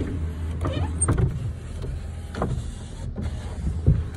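2008 Ford F-150's power window motor running as a door window goes up and down, over a steady low hum.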